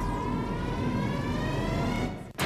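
Rising electronic sweep: several tones glide upward together over a dense low rumble, a build-up sound effect.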